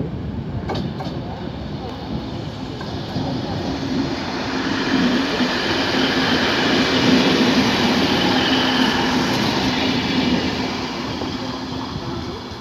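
A DB class 612 diesel multiple unit passes close by. The steady hum of its diesel engines and the noise of its wheels on the rails grow louder to a peak in the middle, then fade as it pulls away. A few sharp clicks come about a second in.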